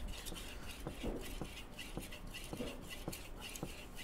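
Kitchen knife being sharpened on a whetstone: the steel blade is stroked back and forth across the stone in quick, even scraping strokes, about three or four a second.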